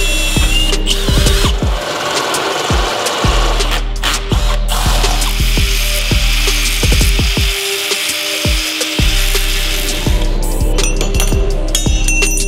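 Power tools working steel: a cordless drill briefly near the start, then an angle grinder cutting a steel piece clamped in a bench vise in a long steady grind that stops about two seconds before the end. Background music with a steady bass beat plays under it throughout.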